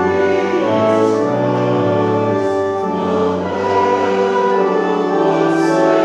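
Voices singing a hymn with pipe organ accompaniment, sustained notes moving from chord to chord.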